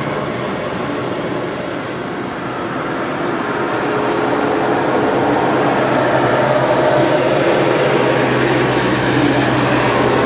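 A steady machine-like drone with a low hum, growing a little louder about halfway through.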